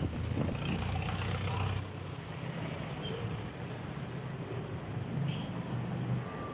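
Street traffic passing close by: taxis and motorcycles driving through a crossing, with a steady low engine rumble and a thin high whine in the first couple of seconds.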